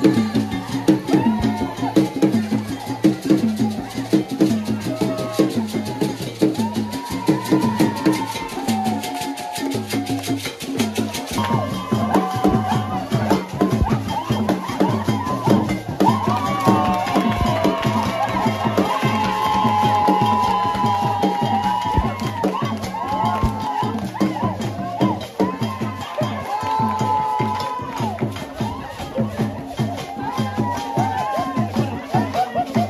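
Traditional drum ensemble playing a fast, dense rhythm with group singing over it; the singing grows stronger about eleven seconds in.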